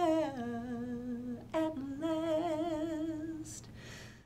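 A woman's voice, unaccompanied, sings the last held notes of a slow song. She holds one low note, then moves up to a longer note with a wide vibrato that fades away near the end.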